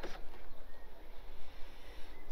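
Quiet outdoor background between remarks: a steady low rumble with faint hiss and no distinct event.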